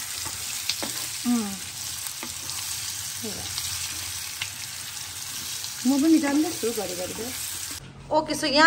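Pieces of fried meat with sliced onions and green chillies sizzling in hot oil in a nonstick pan, stirred with a wooden spatula: a steady hiss that cuts off just before the end.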